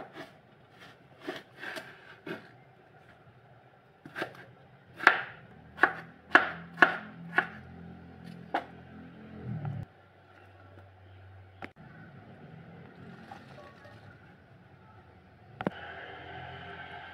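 Kitchen knife chopping peeled cucumber on a wooden cutting board: a dozen or so irregular knocks of the blade on the board, the heaviest in the middle, stopping about ten seconds in, with a couple of lighter knocks after.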